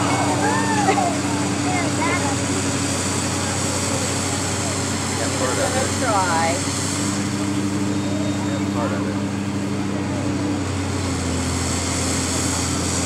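High-reach demolition excavator's diesel engine running steadily as its boom and grapple work, its engine note shifting a couple of times.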